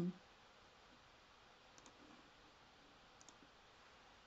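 Near silence with faint computer mouse clicks: a quick double click about two seconds in and another a little after three seconds in.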